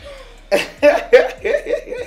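Hearty laughter: a run of short, loud 'ha' pulses that starts about half a second in and keeps going.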